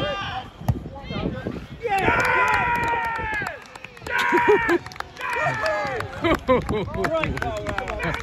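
Voices shouting long drawn-out calls during a walking football match, three in a row, the first held for over a second, with short sharp knocks and footfalls in between.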